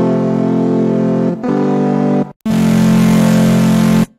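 Serum software synthesizer preset played as three held, bright synth chords. The first two come back to back, and after a brief break the third is held longest.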